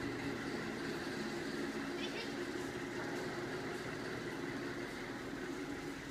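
A steady low machine hum fills a workshop, with a murmur of voices in the background.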